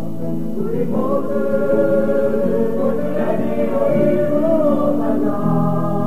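Teenage choir singing a Christian praise song in long held chords, one voice line sliding up about a second in and then holding a wavering note.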